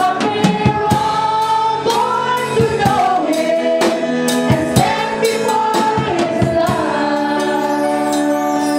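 A woman leads a Christmas carol into a microphone over amplified music with a steady beat, while other voices sing along with her.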